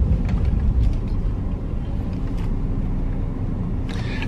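Steady low rumble of a Mercedes-Benz car on the move, engine and road noise heard from inside the cabin.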